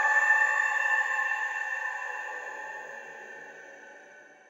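A held electronic synthesizer note with bright overtones, ringing out and fading steadily away: the closing tail of a psytrance track.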